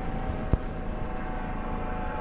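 Steady rumbling background noise, like traffic and wind on the microphone, with a faint steady hum and one sharp click about half a second in.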